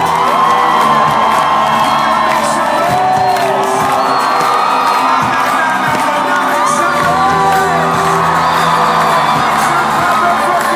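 Live rock band playing loudly through a stadium sound system, heard from within the audience, with the crowd cheering and whooping over the music.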